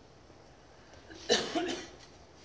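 A person's short cough, about a second and a quarter in, in a quiet pause.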